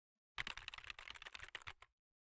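Typing on a computer keyboard: a fast run of key clicks starting about a third of a second in and stopping abruptly after about a second and a half.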